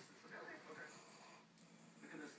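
Faint sounds of a small dog playing with another dog, with quiet television voices underneath.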